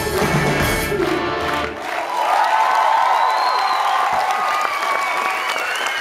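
Live rock band with electric guitar playing the final bars of a song and stopping about two seconds in, followed by the audience cheering and applauding.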